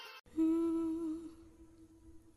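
The last note of a Hindi pop song: after the pulsing backing cuts off, a single low held note fades away, leaving a near-silent gap between tracks.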